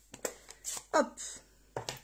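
A few light clicks and taps of an ink pad being picked up and handled, with a short spoken "hop" about a second in.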